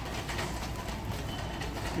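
Wire shopping cart being pushed, its wheels rolling on a hard store floor with a steady rumble and rattle.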